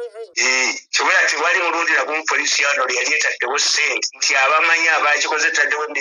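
Speech only: a person talking over a recorded phone call, the voice with its top end cut off.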